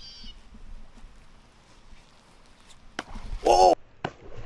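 Quiet outdoor background, then about three seconds in a snook strikes at the water's surface with a sudden splash, followed at once by a short, loud shout.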